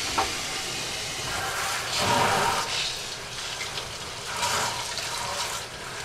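Water running from a sink tap, rinsing leftover soaked barley seed out of a plastic bucket into a perforated drain bucket, splashing and sloshing. It swells about two seconds in and again near the end.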